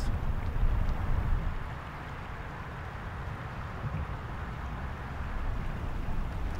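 Steady low outdoor rumble with no distinct events, a little louder for the first couple of seconds and then settling.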